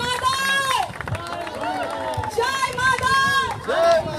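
A group of protesters chanting slogans in loud, drawn-out shouts, several phrases in a row.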